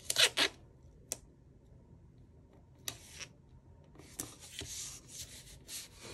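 Paper rustling as a sticker strip's backing is peeled and handled, with a couple of sharp rustles at the start, then palms rubbing the sticker flat onto a planner page for the last two seconds.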